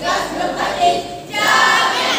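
A group of voices singing together, in phrases about a second long with short breaks between them.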